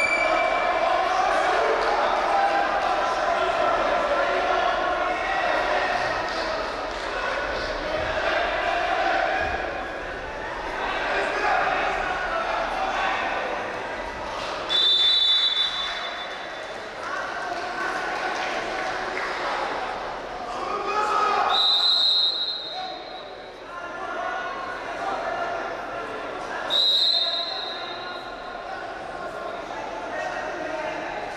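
Voices and chatter echoing in a large sports hall, with a referee's whistle blown in three short blasts in the second half, halting and restarting the wrestling.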